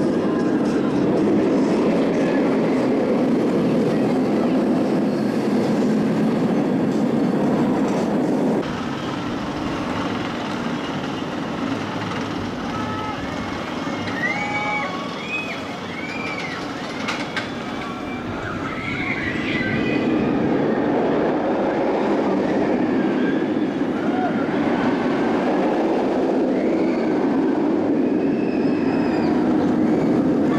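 Bolliger & Mabillard steel inverted roller coaster train running over its track: a steady roar that cuts off sharply about eight seconds in to a quieter stretch with short high calls over it, then builds again and holds to the end.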